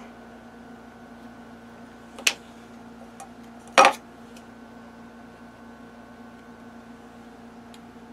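A steady low electrical-sounding hum with two short sharp knocks on the tabletop, one a little over two seconds in and a slightly longer one near four seconds, from hands handling the cards and glue bottle on the game board.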